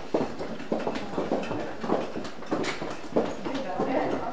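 Footsteps of several people walking on a hard corridor floor, with sharp shoe clicks about twice a second in an uneven rhythm, under indistinct conversation.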